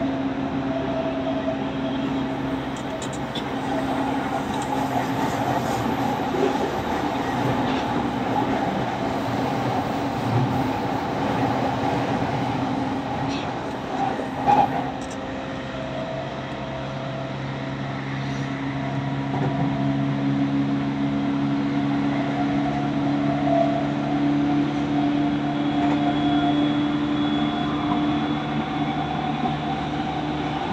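Interior running sound of a JR East E231-1000 series commuter train under way: a steady electric traction hum with rolling wheel and rail noise. A sharp knock about halfway through is followed by a short lull, then the hum comes back steady and stronger.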